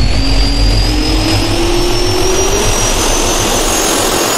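Jet-engine spool-up sound effect: a turbine whine rising slowly and steadily in pitch over a loud, steady rush.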